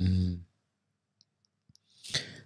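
A spoken word trails off about half a second in, then near silence broken by a few faint, tiny clicks.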